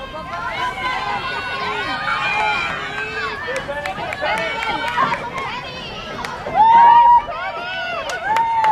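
Spectators and players shouting and calling out at a field hockey game: many high voices overlapping, with one loud, drawn-out shout near the end.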